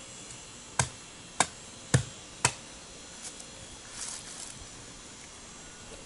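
Machete blade chopping into the husk of a young golden coconut: four sharp strikes about half a second apart, followed by a few lighter knocks and scraping as the top is opened.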